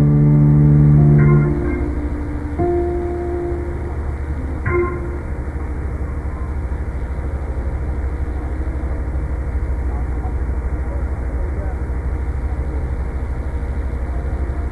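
A sustained chord from the church band dies away about a second and a half in. After that, indistinct voices of a large congregation murmur over a steady low hum, with a couple of brief single notes.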